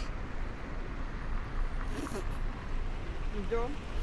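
City street traffic noise: a steady low rumble of passing cars, with a brief faint voice about three and a half seconds in.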